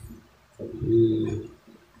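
A man's voice making a drawn-out, wordless filler sound at a low, steady pitch, about a second long, starting about half a second in.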